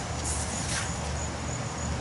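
Steady low outdoor background noise with a low hum, and no distinct event.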